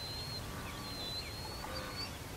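Faint outdoor background with birds calling: thin, high whistled notes with short flicks and breaks, over a low rumble.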